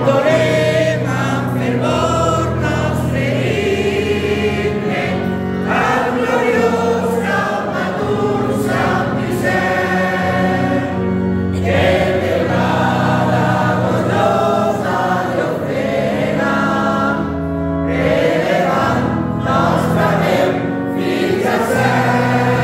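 A congregation of men and women singing a hymn in Valencian together, over organ chords held for several seconds at a time.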